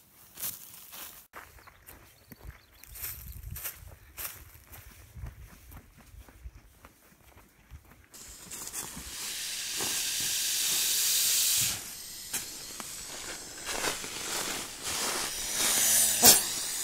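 Pacific gopher snake hissing. A loud, high hiss starts suddenly about eight seconds in and holds for about three and a half seconds, then carries on more softly. Before it there are only faint scattered clicks and rustles.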